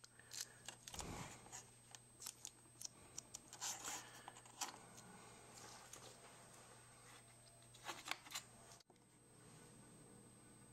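Faint, scattered small clicks and rubbing from fingers shaping soft epoxy putty onto a Diana Mini camera's shutter release lever, dying away near the end.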